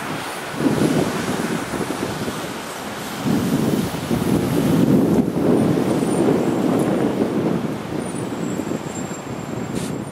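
Outdoor city noise: a low traffic rumble mixed with wind on the microphone, swelling and easing unevenly.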